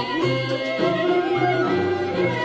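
Chèo (Vietnamese traditional folk opera) music playing: a melodic passage of the song's instrumental accompaniment with held, gliding notes and no clear singing.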